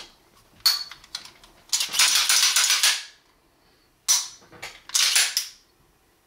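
Steel 1911 pistol being handled: a few sharp metallic clicks about a second in, then longer rasping, sliding metal noises, one from about two seconds in and two close together near the end, the first of those starting with a sharp click.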